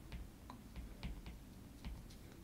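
Faint light ticks of a stylus tip tapping and sliding on an iPad's glass screen during handwriting, about six scattered clicks over two seconds.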